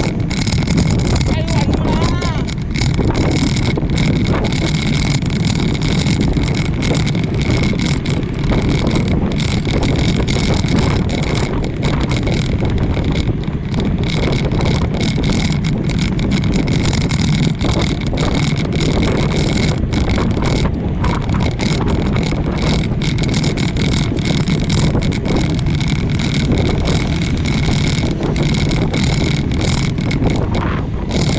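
Wind rushing over the camera microphone on a bicycle moving at about 30 km/h, a loud, steady rushing roar.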